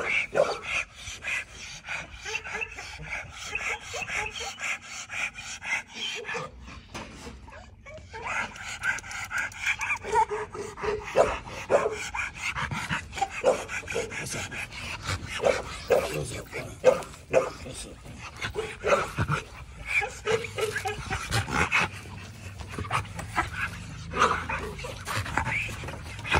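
Chained pit bull-type dog panting hard and whining in long, high drawn-out stretches, with a few barks.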